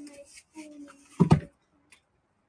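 A woman's voice trailing off quietly, then a brief loud bump a little over a second in.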